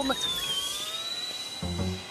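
Cartoon soundtrack: a steady high electronic tone slowly rising in pitch, then a short phrase of low music notes coming in near the end.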